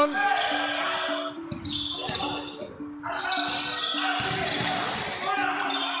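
A basketball dribbled on a hardwood court, with repeated short bounces over the steady noise of an indoor arena crowd and faint indistinct voices.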